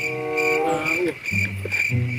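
Insect chirping: a high-pitched pulse repeating steadily about four times a second, over background music with a melody and bass line.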